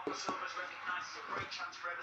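Hands rummaging through a cardboard box packed with plastic bags, giving rustling and a few light knocks, with faint background speech.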